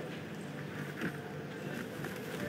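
Quiet room tone with a faint steady hum and one brief soft rustle about a second in.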